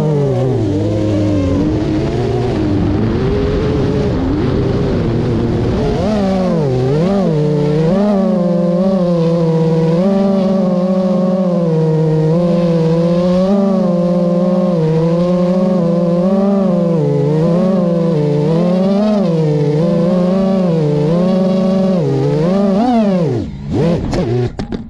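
FPV quadcopter's electric motors and propellers whining loudly, the pitch rising and falling continually as the throttle changes, heard up close from the drone's own camera. Near the end the pitch drops away sharply as the motors slow.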